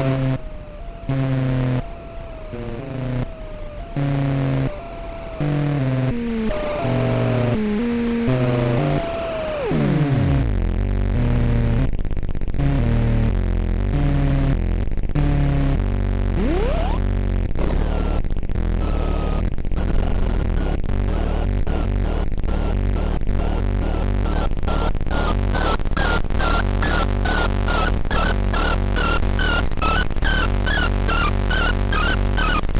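Behringer 2600 semi-modular analog synthesizer playing a patched sequence: short stepped notes with gaps between them, then about ten seconds in a downward pitch sweep and a continuous low bass drone under a choppy pulsing pattern that speeds up, with short high blips near the end.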